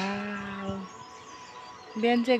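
A singing voice holds one long, steady note for about a second, then stops. A quieter stretch follows with faint bird chirps.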